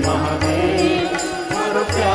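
A man singing a devotional bhajan to Mahadev (Shiva) in a Rajasthani folk tune, with instrumental accompaniment and a regular percussion beat.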